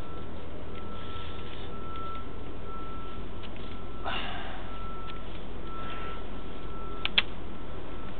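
A steady low machine hum with a single high beeping tone that comes and goes in uneven pulses, a brief hiss about halfway through, and two sharp clicks near the end.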